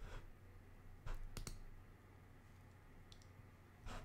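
A handful of faint, irregular clicks close to the microphone, about five in all, over a low steady hum.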